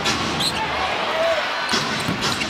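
Basketball arena sound during live play: a steady crowd murmur, a brief high sneaker squeak on the hardwood about half a second in, and the ball bouncing on the court near the end.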